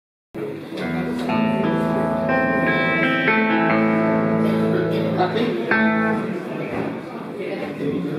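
Live band on stage sounding a few long held chords on electric guitar and keyboard, ringing out for about five seconds, then dying away into room chatter.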